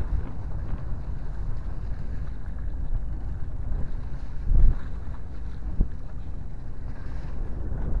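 Steady wind rumble buffeting the microphone on a small fishing boat at sea. About halfway through comes a brief louder burst as a hooked mahi-mahi thrashes at the surface beside the hull.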